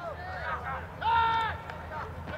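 A single drawn-out shout on the football field about a second in, held on one pitch for about half a second: a call of the snap count as the ball is snapped. Under it runs a steady low outdoor rumble.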